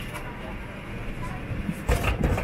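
Steady low hum of a parked airliner's cabin with faint passenger voices, and one loud thump near the end.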